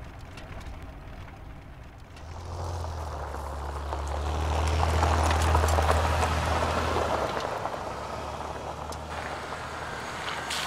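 A minivan drives past on a dirt road, its engine humming and its tyres crunching over the dirt and gravel. The sound builds from about two seconds in, is loudest midway, then fades as the van drives away.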